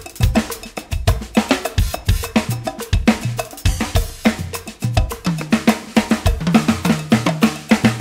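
Drum kit played with sticks in a steady, busy groove of snare, bass drum and cymbals, over a percussion backing track with cowbell. Hits come several times a second, with a sharp, clanking cowbell pattern on top.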